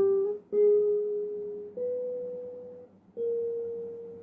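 Classical nylon-string guitar played solo: a slow melody of single plucked notes, each ringing out and fading away, with short pauses between some of them.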